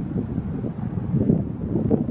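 Wind buffeting the microphone: an uneven, gusting low rumble with no clear tones.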